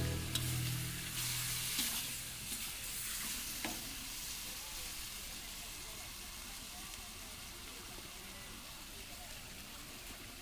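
Chicken frying in a wok, a faint steady sizzle, with a few sharp clicks of the spatula against the pan in the first few seconds. A music track fades out over the first second or so.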